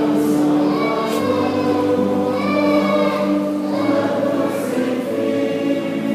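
A church choir and congregation singing a hymn together, many voices holding long sustained notes.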